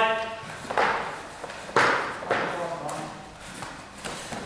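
A short shouted call at the start, then three or four sharp hits as two kickboxers exchange punches and kicks, the loudest about two seconds in, with another brief shout near the end.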